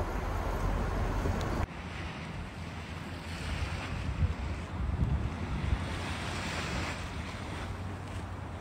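Small waves washing up on a sandy beach, the surf swelling twice and falling back, with wind buffeting the microphone. For the first second and a half or so, before an abrupt cut, the low rumble of a moving vehicle.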